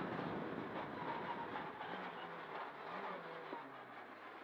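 Cabin noise inside a Mitsubishi Lancer Evo X rally car: engine and tyre noise, growing steadily quieter as the car slows for a hay-bale chicane.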